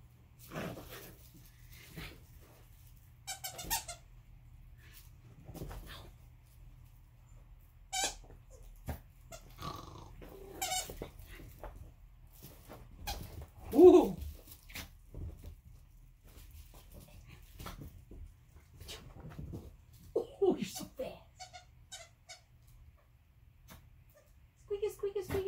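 Small dog playing with a squeaky plush toy: short scattered squeaks mixed with the dog's own play noises, the loudest sound coming about halfway through.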